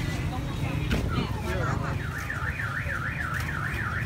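A vehicle anti-theft alarm warbling: a tone sweeping up and down about three times a second, starting about two seconds in, over steady low background noise.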